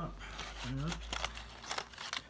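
Plastic bags crinkling and small items clicking as a hand rummages through them on a table. A brief murmur from a man comes a little before a second in.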